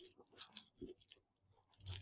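Faint, crisp little crackles and ticks as a snap-off utility knife blade cuts into a plastic pack.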